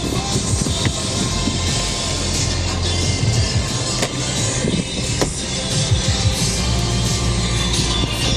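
Music playing from the car's radio inside the cabin, over a steady hiss of the air conditioning, with a few sharp clicks about a second in and again around four and five seconds in as the sun visor is handled.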